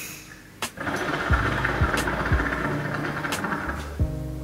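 Water bubbling in the glass base of a brass Piranha hookah as a long draw is taken through the hose. It is a steady gurgling rumble that starts about a second in and lasts nearly three seconds.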